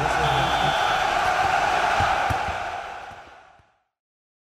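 Outro sound effect for the channel's end card: a loud, even rushing noise that starts at once, holds for about two and a half seconds, then fades away.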